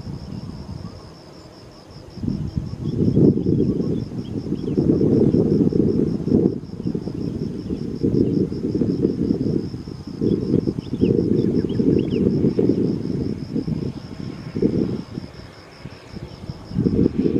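Wind gusting on the microphone in low rumbles that swell and fade, with lulls near the start and near the end. Behind it, insects trill in a steady, fast, even pulse.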